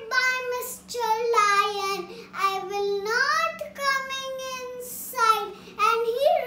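A young girl singing, her voice gliding up and down, with one long held note about four seconds in.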